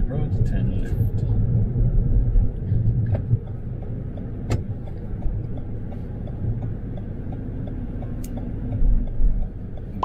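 Car interior road and engine rumble while driving, heavier for the first few seconds. From about three seconds in, the turn-signal indicator ticks steadily ahead of a left turn.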